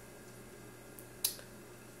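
Quiet room with a low steady hum, broken by a faint click about a second in and one short, sharp hiss shortly after.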